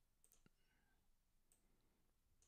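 Near silence, broken by three very faint clicks of a computer mouse or trackpad.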